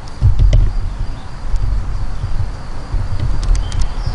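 Irregular low rumble and buffeting on the camera microphone, with a few faint clicks about half a second in and again near the end.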